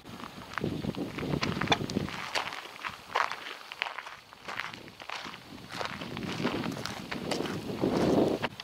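Footsteps on a sandy gravel track at a steady walking pace: a run of short crunches, about two a second.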